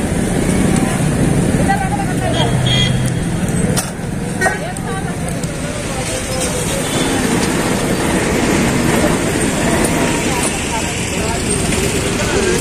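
Busy street-market din: steady traffic noise with background voices, and a couple of sharp clicks about four seconds in.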